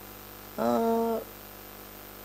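A woman's short, held wordless vocal sound, a hesitation while she thinks before answering, lasting about half a second, over a steady electrical hum.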